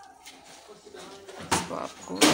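A hand mixing and squeezing crumbly flour dough in a plastic bowl: soft rubbing and squishing, with one short, louder burst of noise about one and a half seconds in.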